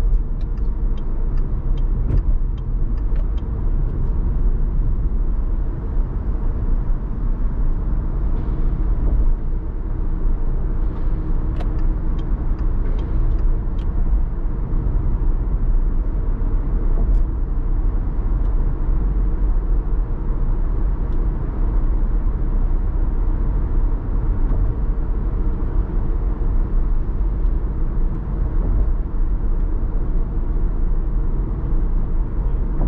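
Steady low road and engine rumble of a car cruising on a highway, with a few faint light ticks early on and again about halfway through.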